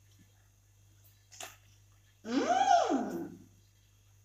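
A girl's wordless vocal exclamation, about a second long and loud, rising and then falling in pitch, about two seconds in, as she tastes sugar. A faint tap comes shortly before it.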